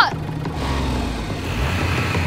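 Low, steady rumble of a cartoon vehicle driving off, swelling around the middle, with background music under it.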